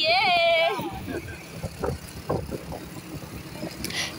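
Low road noise from a ride on a small motorbike, with engine and street traffic, opening with a short, wavering, high-pitched vocal exclamation.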